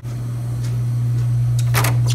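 Metal lever handle of a wooden door being pressed, its latch clicking near the end, over a steady low hum.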